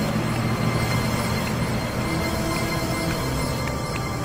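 Dark, tense film score: sustained droning tones over a low bass bed.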